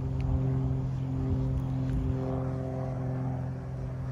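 A motor running steadily with a low, even hum.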